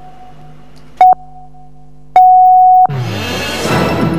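Electronic countdown beeps at one steady pitch: a short beep about a second in, then a longer final beep just after two seconds. Right after it, a rising whoosh opens the news theme music.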